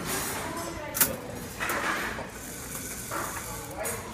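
Small robot motor winding a string onto a spool to raise an elevator platform, with a sharp click about a second in.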